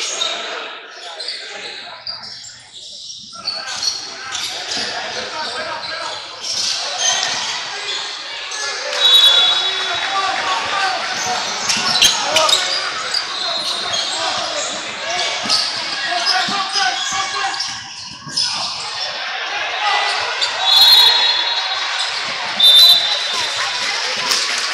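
Indoor basketball game: a ball bouncing on a hardwood court and brief high sneaker squeaks around 9 and 21–23 seconds in, over the talk of players and spectators, all echoing in a large gym.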